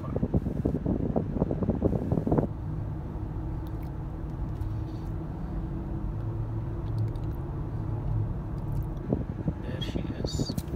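Steady low rumble of engine and road noise inside a moving car's cabin, with a faint hum running through it.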